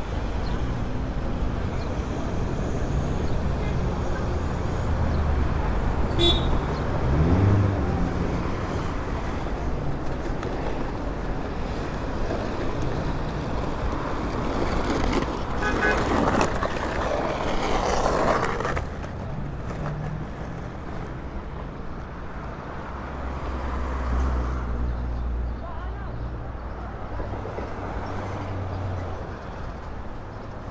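Road traffic on a busy city avenue: cars and vans running and passing close by, one engine rising in pitch about seven seconds in, with a louder stretch of traffic noise from about fifteen to nineteen seconds before it eases.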